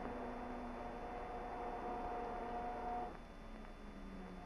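B-24 Liberator cowl flap electric actuator motor running with a steady hum, then stopping about three seconds in as the flaps are worked through the operation test.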